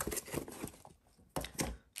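Handling noise from a small cardboard box full of foam packing peanuts being moved aside and foil card packs being picked up: short knocks and rustles in two bursts, with a brief pause about a second in.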